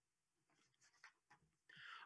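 Near silence: room tone through a video-call microphone, with two faint clicks in the middle and a soft intake of breath near the end.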